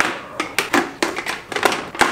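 Inner padding being pulled out of a full-face motorcycle helmet: about five sharp clicks and snaps, irregularly spaced, as the liner's fasteners come loose from the shell.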